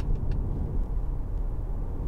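Steady low rumble of road and engine noise heard inside the cabin of a moving BMW 520d saloon, whose engine is a 2.0-litre four-cylinder diesel.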